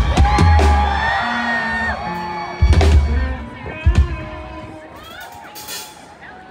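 Rock band live on stage playing loud accented hits: heavy bass and drums with distorted electric guitar, struck about three times a few seconds apart. A crowd whoops and cheers between the hits, and the music thins out near the end.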